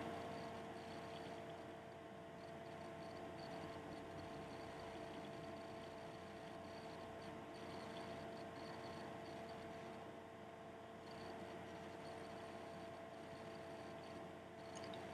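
Faint room tone: a steady low hum with two thin held tones and a light hiss.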